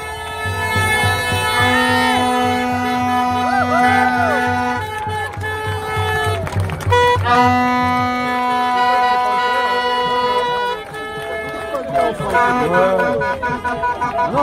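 Car horns sounding in long held blasts from passing convoy vehicles, several pitches at once, over a crowd's shouts and cheers; the horns stop about eleven seconds in, leaving the crowd's voices.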